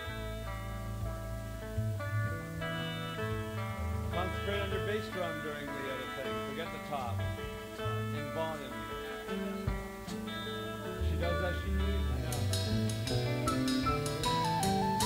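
Rock band's instrumental intro from a studio rehearsal tape: a guitar picks a melodic figure over a stepping bass line. Drums and cymbals come in near the end.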